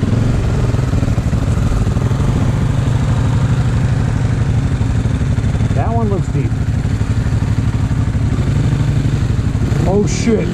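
Dirt bike engine running steadily at low revs, with a brief wavering rise and fall in pitch about six seconds in.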